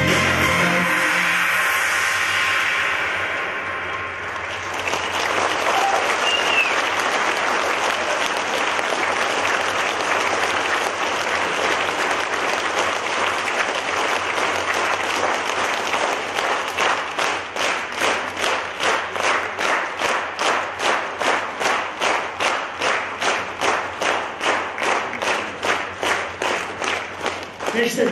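The last notes of a song die away and a concert audience breaks into applause. Over the last ten seconds the applause turns into clapping in unison, about two claps a second.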